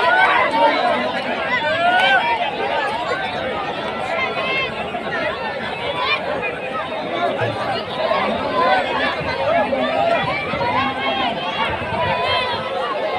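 Crowd of spectators at a wrestling pit, many men's voices talking and calling out over one another in a steady babble.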